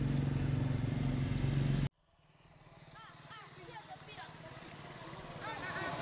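Street sound: a motor vehicle engine running steadily with a low hum, cut off abruptly about two seconds in. Voices and chatter then fade back in and grow louder.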